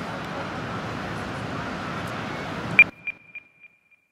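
End of an ambient music track: a steady haze of outdoor background noise cuts off suddenly about three seconds in, and a single short high ping sounds and echoes about four times, fading into silence.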